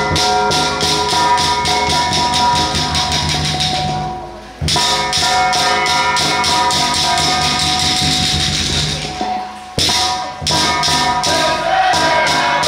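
Temple ritual percussion: drum and cymbals beaten in a fast, even roll with steady ringing metal tones underneath, played in phrases that break off briefly about four and a half and ten seconds in. Voices join in near the end.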